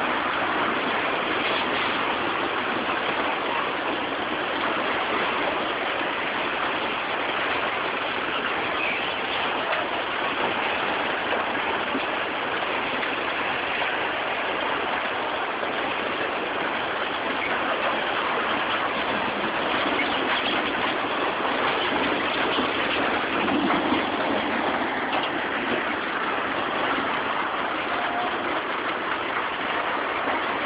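Steady rushing noise of tsunami floodwater surging through a town, carrying debris and wrecked buildings along, unbroken throughout.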